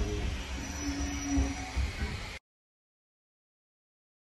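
Low, steady rumble inside a vintage railway carriage, with a faint held tone in the middle, then the sound cuts off abruptly to dead silence about two and a half seconds in.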